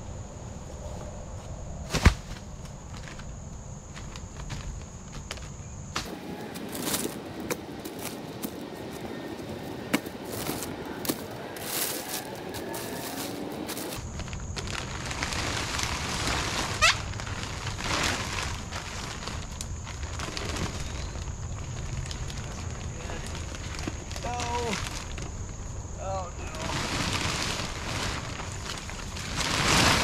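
Dead tree limbs being dragged and dropped, with a sharp knock about two seconds in and crackling of twigs, then large sheets of plastic sheeting being pulled and rustled, growing louder near the end.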